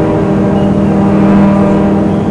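Harmonium holding a steady sustained chord, its reeds sounding the same notes without a break.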